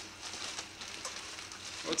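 Wrapping paper and tissue paper rustling and crinkling as a present is unwrapped, a faint, even crackle.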